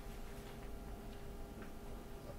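Quiet room tone: a faint steady hum with one or two faint ticks.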